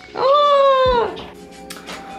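A single high-pitched, drawn-out vocal call lasting about a second and falling away at its end, followed by a few faint clicks.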